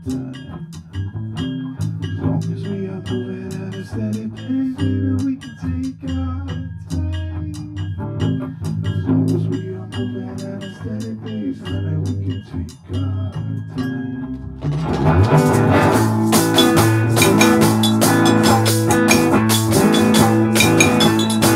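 Live band playing an instrumental passage: guitar and bass over light, regular percussion ticks, then about fifteen seconds in the drums and cymbals come in and the band plays noticeably louder.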